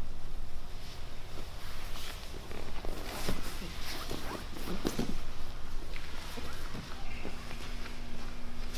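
Two grapplers rolling on foam mats: scattered soft thumps, scuffs and skin-on-mat rubs as bodies and bare feet shift and land. A low steady hum comes in near the end.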